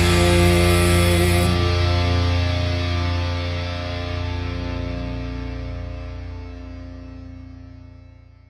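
The end of a metalcore song: a final chord on distorted electric guitar over bass is held and rings out, fading away to nothing. The high crash-like hiss stops about a second and a half in.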